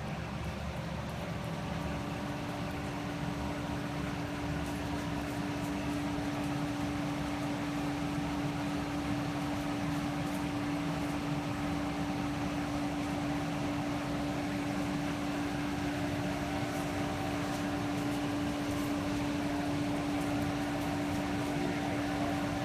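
A steady mechanical hum with one strong constant low tone and fainter tones above it, such as a ventilation fan or air-handling unit makes, running unchanged.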